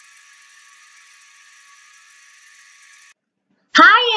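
Faint, steady high-pitched hiss that cuts off abruptly about three seconds in. A child's voice starts speaking just before the end.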